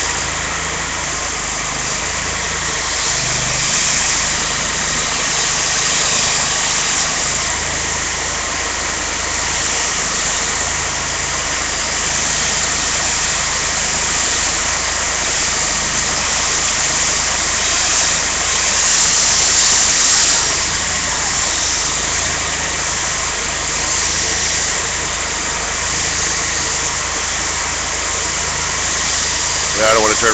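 Power washer running steadily: an engine hum under a constant broad hiss, briefly a little louder about two-thirds of the way through.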